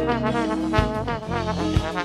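Live rock band playing an instrumental break: a trombone solo of sliding, bending notes over bass and drums, with the kick drum landing about once a second.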